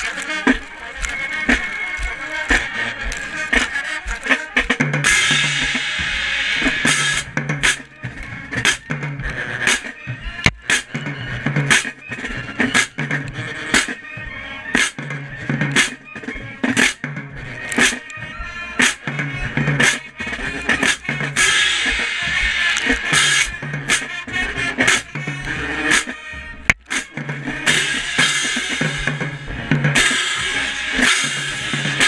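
Marching band playing, with crash cymbals struck close to the microphone over snare and bass drums. Rhythmic drum hits run throughout under a low bass line, and bright cymbal crashes swell about five seconds in and again past the twenty-second mark.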